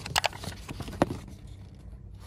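Pages of a paper instruction booklet being leafed through by hand: a few short paper rustles and flicks, one near the start and a sharper one about a second in, over a faint low hum.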